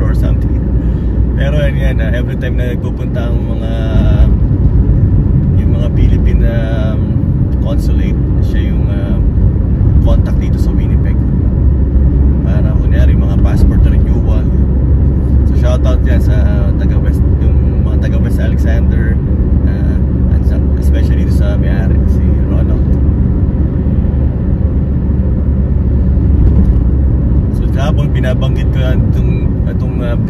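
Steady low road and engine rumble inside a moving car's cabin, with short stretches of a person's voice every few seconds.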